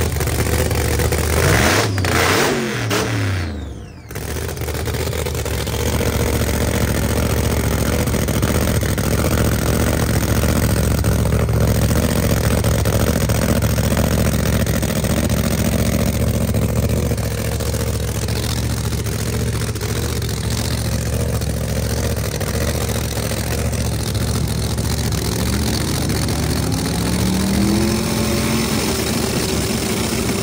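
Supercharged V8 Pro Mod drag car engines running loudly. The revs fall away in the first few seconds, then hold at a steady idle, and near the end they climb again as the cars stage for a run.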